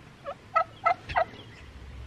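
Blue Slate heritage turkey calling: four short, evenly spaced notes about a third of a second apart.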